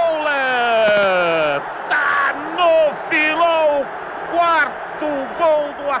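A football commentator's drawn-out goal shout, one long held "gol" that slides down in pitch and ends about a second and a half in, followed by rapid play-by-play commentary.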